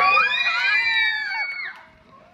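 Water slide riders screaming together, several voices rising into a long high held scream that breaks off about three-quarters of the way through.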